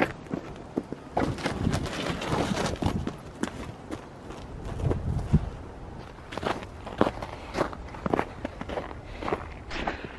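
Footsteps of winter boots on trampled snow at a walking pace.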